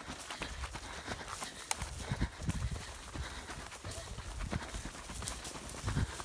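Footsteps of people jogging along a dry dirt track: a quick, irregular patter of footfalls over a low rumble on the microphone.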